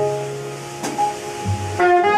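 Live jazz ballad played by a quartet of tenor saxophone, double bass, piano and drums. The bass holds a low note, there is a cymbal stroke about a second in, and the saxophone comes back in near the end with a rising, sustained phrase.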